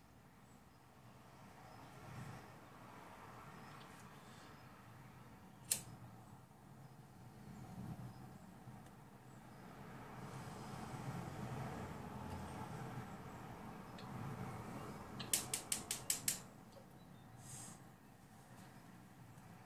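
A hand lighter being struck while a medwakh pipe is lit and smoked. There is a single sharp click about six seconds in, a faint breathy draw and exhale in the middle, then a quick run of about seven clicks and a short hiss near the end.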